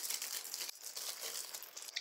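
Thin clear plastic disposable gloves from a box hair dye kit crinkling as they are pulled on over the hands, an irregular crackly rustle.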